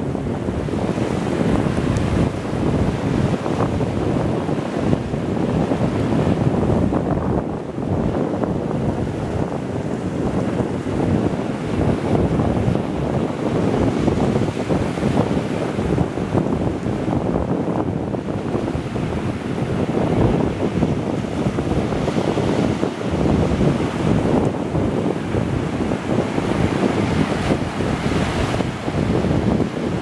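Wind buffeting the microphone over the steady wash of small waves breaking on a sandy beach.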